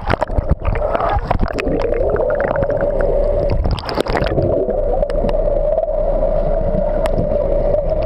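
Water heard underwater: bubbling and gurgling with many small knocks for about the first four seconds, then mostly a steady, slightly wavering hum.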